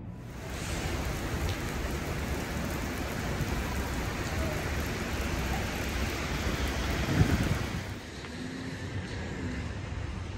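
Steady rain falling on wet city pavement, an even hiss that drops away about eight seconds in.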